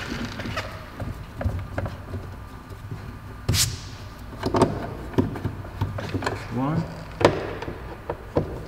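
Scattered clicks and knocks of a Torx T20 screwdriver and screws against a BMW X1's plastic door panel, the sharpest about three and a half and seven seconds in, with a short rising squeak just before the second.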